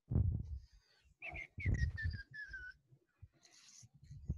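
A few low thumps, then a high whistle-like tone that falls slowly in pitch over about a second and a half, broken into three short stretches, with a short hiss near the end.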